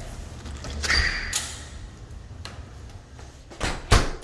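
A house door from the garage being opened and shut: a short squeak about a second in, then a thump as it closes near the end.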